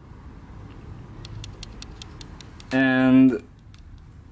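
A run of light, evenly spaced clicks, about five a second, as a bare piston with its rings is turned in the hands, then a man's drawn-out "uhh" hesitation a little under three seconds in.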